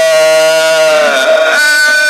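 A man's voice reciting the Quran melodically in maqamat, holding one long note that slides down just past halfway and then settles on a new held note near the end.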